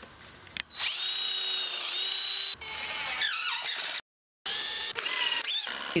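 Cordless drill running under load into the wooden studs of a wall frame: a steady whine for about two seconds, then a whine that falls away, a brief break, and another burst near the end.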